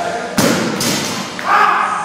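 A 148 kg barbell with black rubber plates dropped from overhead onto a gym floor: a loud thud about half a second in, then a second impact as it bounces.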